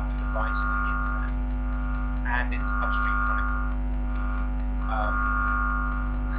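Steady electrical hum and buzz on the audio feed, a constant drone of several tones that does not change, with faint indistinct voices breaking through a few times.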